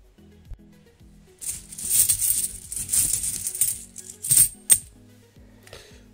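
Cupro-nickel 50p coins jingling against each other inside a cloth bag as a hand rummages for one. The rattle lasts about three seconds and ends with two sharp clinks.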